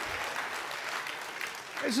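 Audience applause, an even clatter of clapping that slowly dies down, with a man's voice starting to speak at the very end.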